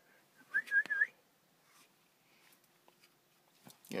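A person whistling a short, warbling call of a few quick high notes, lasting about half a second, to call a dog.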